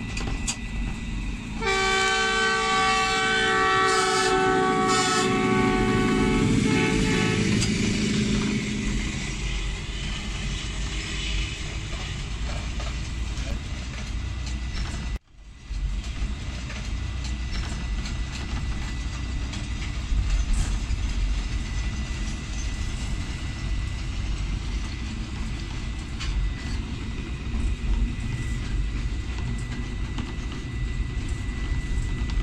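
Diesel locomotive horn sounding one long multi-tone blast, starting about two seconds in and held for about five seconds, over the steady low rumble of a train running on the rails. A brief dropout about halfway through, after which the running rumble carries on.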